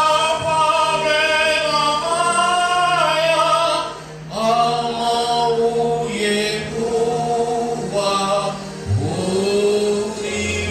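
Church choir singing a gospel song in phrases, with short breaks about four seconds in and near the end, over a steady low sustained note.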